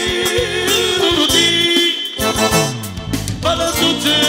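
Live accordion music with a man singing into a microphone in a wavering, ornamented voice. Around the middle a run of low notes descends before the full sound returns.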